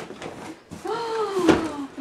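Handling noise of a large cardboard toy box being pulled out of a fabric bag, with a sharp knock about one and a half seconds in. Over it, from about the middle, a voice's long, slowly falling "ooh".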